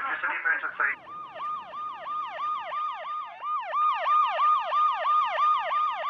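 Emergency vehicle siren in a fast yelp, swooping down and up about four times a second. It follows a short jumble of noise in the first second.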